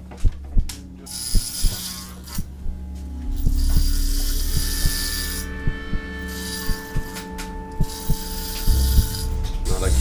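Corded electric hair clippers buzzing as they cut a man's hair, the blades rasping through the hair with irregular sharp clicks. The cutting sound grows louder about three and a half seconds in.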